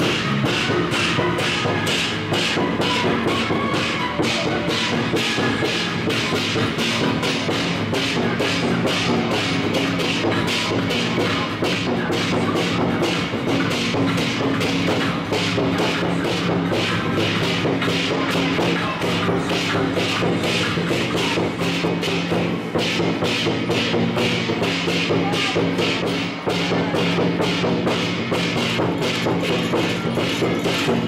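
Loud percussion-led music for a temple ritual procession, with a steady beat of sharp strikes about three a second over sustained low tones.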